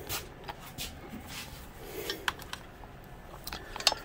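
Quiet room hiss with a few faint, scattered clicks and taps from a hand handling a PlayStation 5 DualSense controller on a desk.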